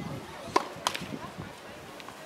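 Tennis balls struck by rackets: two sharp pops about a third of a second apart, the first with a short ringing of the strings.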